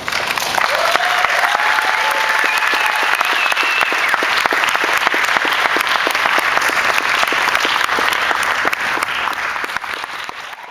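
Audience applause breaking out all at once, dense steady clapping with a few cheers in the first seconds, tailing off near the end.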